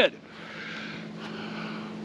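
A steady distant engine: a constant low hum with a soft hiss above it.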